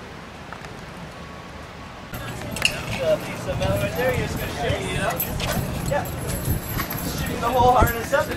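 A quiet steady outdoor hiss, then from about two seconds in people's voices chattering with scattered metallic clinks of climbing-harness carabiners and gear being handled.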